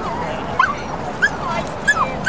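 Dog giving three short high yips, each dropping in pitch, about two-thirds of a second apart.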